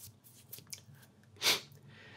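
A person's short intake of breath about one and a half seconds in, with a few faint mouth clicks before it, against quiet room tone.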